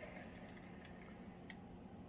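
Near silence: faint room tone with a low steady hum and a couple of soft, faint clicks.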